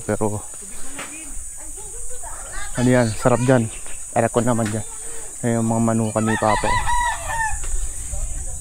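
A rooster crowing once near the end. Before it, a man's voice repeats a short syllable over and over, all over a steady high insect buzz.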